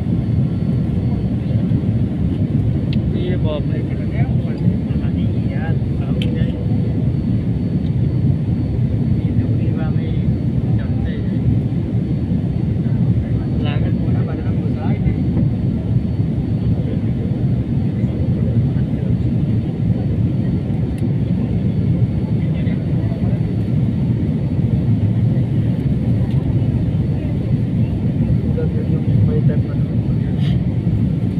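Airliner cabin noise in flight: a steady low roar of the jet engines and rushing air, heard from a window seat over the wing.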